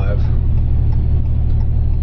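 Steady low road and engine rumble inside a car's cabin, driving up a hill at about 24 miles an hour.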